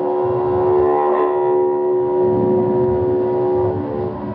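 Tarhu, a bowed spike fiddle, sustaining one long bowed drone note that breaks off just before the end, over a low uneven rumble.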